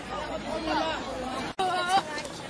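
Chatter of several overlapping voices. About one and a half seconds in, the sound drops out for an instant, then a louder, high-pitched voice calls out near the end.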